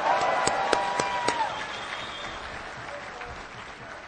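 Audience applause in a large hall, with a few sharp claps standing out in the first second or so, dying away over about three seconds.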